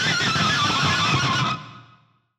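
Pick scrape on an electric guitar's G and B strings through the bridge pickup, run through a wet echo: a wavering squeal that slides steadily down in pitch with echo repeats, then fades out about three-quarters of the way through.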